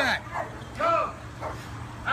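Black shepherd protection dog barking twice, about a second apart.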